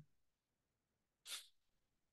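Near silence, broken once by a brief, faint puff of hissy noise about a second and a quarter in.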